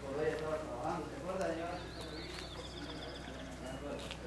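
Indistinct voices talking, with a small bird's high, rapid trill coming in about two seconds in and lasting a couple of seconds.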